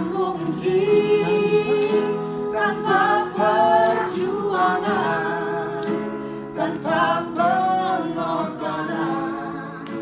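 A small mixed group of male and female voices singing together, holding long sustained notes, accompanied by acoustic guitar and keyboard.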